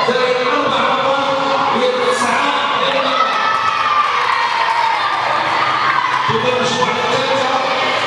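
A group of children cheering and shouting, with hand clapping.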